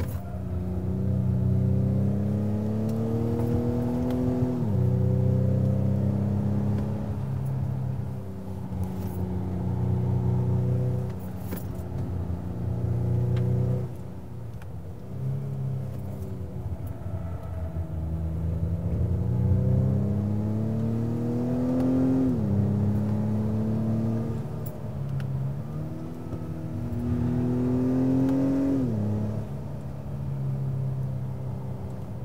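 2021 Acura TLX A-Spec's 2.0-litre turbocharged four-cylinder heard from inside the cabin, revving up under hard acceleration, with Acura's augmented exhaust sound piped in through the speakers in sport mode. The pitch climbs and then drops sharply at upshifts of the 10-speed automatic, once about four seconds in and twice near the end.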